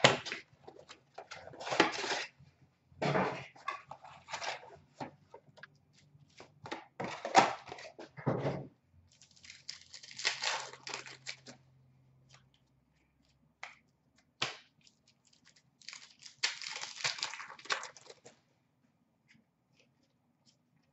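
A cardboard hockey-card blaster box and its card packs being torn open by hand: several bursts of tearing and crinkling wrapper, with light clicks of cards being handled between them.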